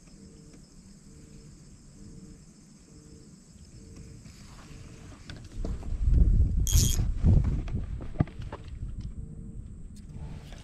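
A faint insect buzz and a soft chirp repeating about one and a half times a second, then, about halfway, loud rumbling and rustling handling noise on the action camera as the fishing rod is lifted and the line is taken in hand, with one sharp clatter partway through.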